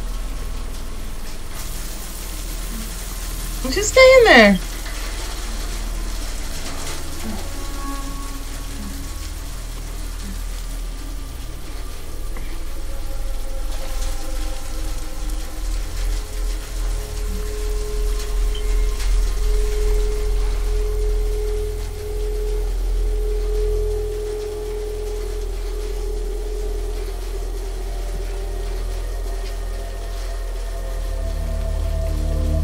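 Horror film soundtrack: a deep, steady rumble under a dark sustained music tone, with a sudden loud sound sliding steeply down in pitch about four seconds in. A pulsing rumble swells in the middle of the stretch and then settles.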